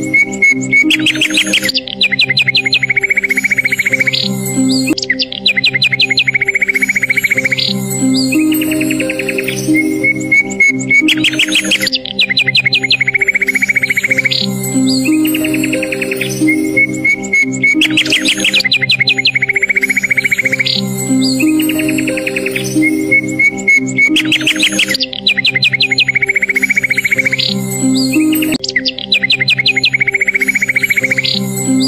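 Slow, relaxing background music of sustained low chords, layered with birdsong. The birdsong is a held whistled note followed by a rapid chirping trill, and the same phrase repeats every three to four seconds, like a looped recording.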